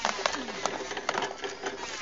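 Hand-cranked coffee pulper (descerezadora) running as red coffee cherries feed down its hopper: a dense, irregular clatter of clicks over a faint steady tone.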